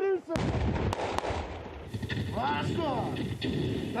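A simulated battlefield blast from a training explosive charge goes off about a third of a second in, with a deep rumble that lasts about a second and a half. A couple of sharp cracks come right after it.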